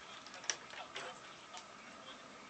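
Bang & Olufsen Beosound 9000 CD changer's disc carriage travelling along its rail from one CD position to the next, heard as a series of light mechanical ticks and clicks. The sharpest click comes about a quarter of the way in.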